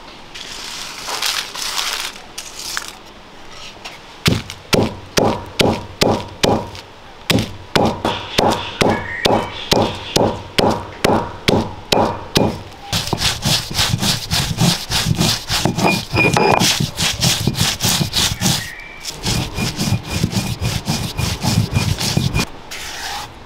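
Dried red chillies crushed on a flat stone grinding slab with a heavy cylindrical stone roller: after a few light rustles, regular crunching strokes about two to three a second, then a faster, denser run of grinding strokes from about halfway, with a brief pause near the end, as the chillies break down into coarse flakes.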